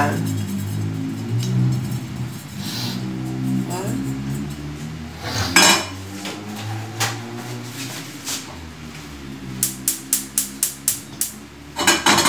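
Background music, over which a metal frying pan is set down with a knock on a gas stove's burner grate, followed near the end by a quick run of sharp clicks, about five a second, from the stove's spark igniter lighting the burner.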